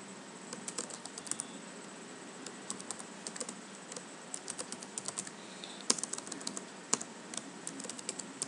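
Computer keyboard typing in short irregular bursts of key clicks with pauses between, two harder key strikes standing out about six and seven seconds in, over a faint steady hiss.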